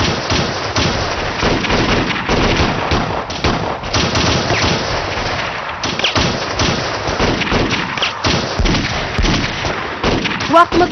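Heavy, continuous gunfire from rifles: many shots overlapping in a dense, unbroken exchange of fire.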